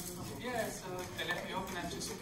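A person talking, quieter than the talk around it.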